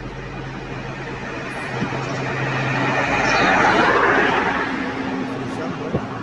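A car passing close by on a highway, its tyre and engine noise swelling to a peak about four seconds in and then fading.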